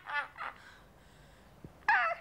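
A boy wailing in loud, wavering comic sobs. Two short cries come in the first half second, then a pause, then another loud cry near the end.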